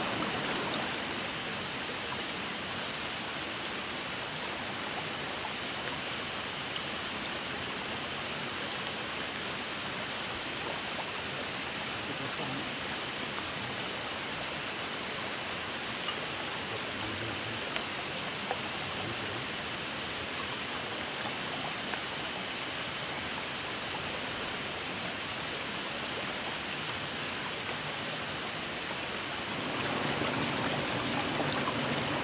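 Steady rush of running water from a forest stream, with a few faint clicks.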